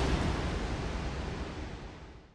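Whooshing noise swell from a TV news logo ident's soundtrack, with no tune in it, fading steadily away.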